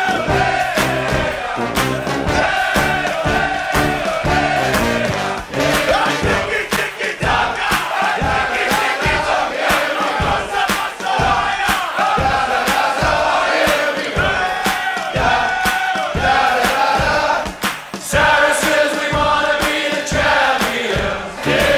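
Music with a steady beat, mixed with a crowd cheering and shouting.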